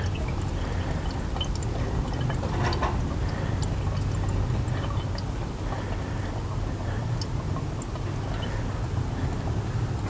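AutoSiphon bar-top soda-syphon refiller charging a syphon with CO2 from a modern 8 g capsule, giving only a faint, steady gas-and-liquid sound over a low rumble. The quiet flow comes from a capsule that has not been pierced well.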